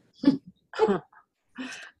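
A man clearing his throat and coughing: three short, rough bursts about half a second apart.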